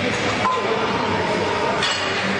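Steady background din of a gym, with a light clink near the end.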